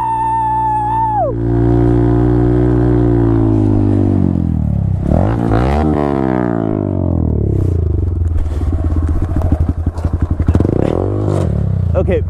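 Honda Grom's 125 cc single-cylinder engine running at steady revs while the bike circles on snow, its revs dropping about four seconds in, dipping and climbing again near six seconds, then running unevenly with choppy blips.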